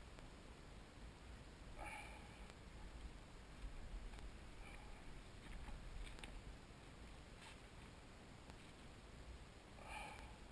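Near silence with a few faint, scattered clicks and handling noises from rubber fuel hoses being pushed back onto their fittings and clamped.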